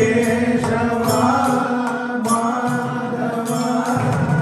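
Devotional bhajan singing in Carnatic style: long, held vocal lines that step up in pitch about a second in, with only a few light mridangam strokes.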